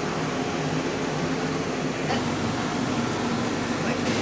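Steady air-conditioning hum, even and unchanging.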